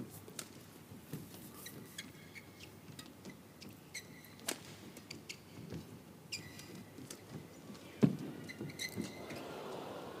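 Badminton rally: sharp racket strikes on the shuttlecock about once a second, with short shoe squeaks on the court floor. The loudest hit comes about eight seconds in.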